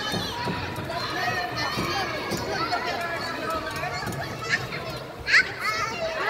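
Indistinct chatter of children and other visitors, with one loud, high-pitched cry rising in pitch about five seconds in.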